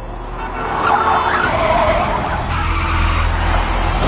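Car engine running hard and tyres screeching as the car swerves off the road onto dirt, loudest from about a second in.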